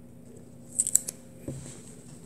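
Handling noise from a smartphone being turned over in the hands: a quick cluster of sharp, high clicks about a second in, then a single dull knock.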